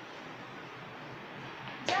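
A handheld whiteboard duster rubbing across a whiteboard as it wipes off writing, a steady, even rubbing, ending in a sharp click near the end.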